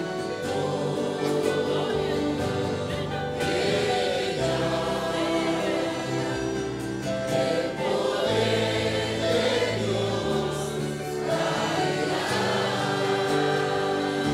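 Congregation singing a worship song together in chorus.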